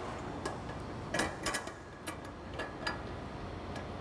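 Scattered light clicks and ticks, irregularly spaced, over a low steady machinery hum.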